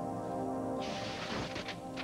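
A paper poster pulled off a wall, with a rustle and crackle of paper about a second in, over soft sustained background music.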